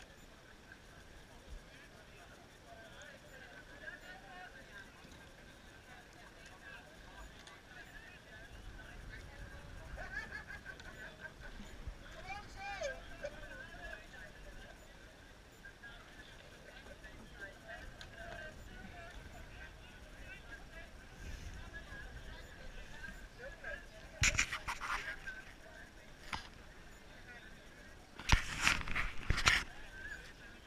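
Indistinct chatter of many voices from rowing crews crowded around the boat, with louder short bursts of sound about two-thirds of the way through and again near the end.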